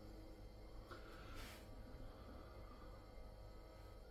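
Lager poured from a can into a glass, heard faintly: a soft pour with a short hiss about a second and a half in.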